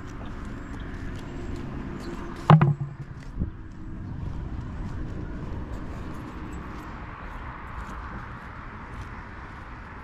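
Steady outdoor street noise, a low rumble, broken by one loud thump about two and a half seconds in and a smaller knock a second later.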